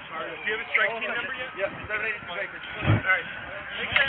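Indistinct voices of several people talking around the body-worn camera, with a dull thump about three seconds in.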